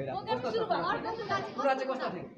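Speech: a young man talking with other voices chattering over him.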